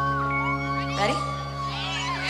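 Live band holding a steady sustained chord, with high voices gliding up and down over it, typical of fans screaming at a concert.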